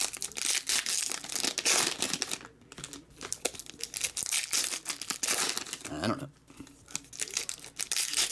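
Foil wrapper of a 2017 Topps Fire baseball card pack crinkling and tearing as it is opened by hand, in runs of rustling with two short pauses.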